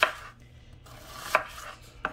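Kitchen knife slicing through an onion onto a wooden cutting board: two sharp knocks of the blade striking the board, just under a second and a half apart.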